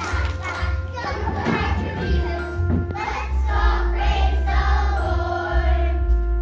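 A group of young children singing a song together over a recorded backing track with a heavy bass line.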